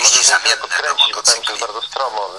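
Speech only: a voice talking continuously in Polish, as in a broadcast interview.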